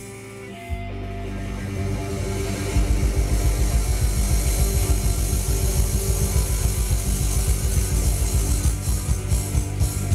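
Live rock band playing: after a brief dip, a held low chord rings out, and from about three seconds in a rapid low pulse drives under it, with separate drum hits returning near the end.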